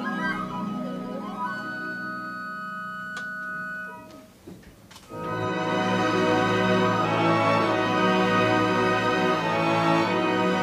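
Symphony orchestra playing very softly (pianissimo), held notes thinning out and fading about four seconds in. After a short hush the full orchestra comes in much louder about five seconds in and plays on.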